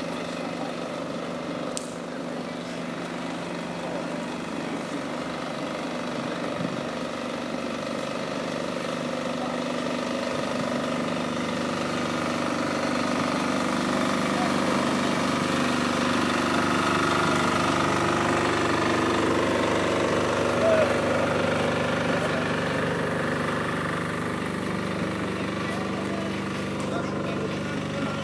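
A steady engine hum, growing gradually louder through the middle and easing a little near the end, with the background voices of people at an outdoor market.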